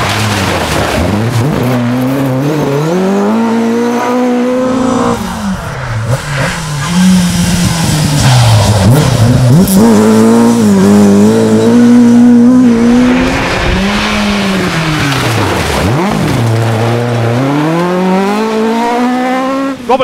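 Ford Escort Mk II rally car's engine revving hard. Its pitch climbs and then drops several times as the car accelerates, shifts and lifts, and it is loudest near the middle.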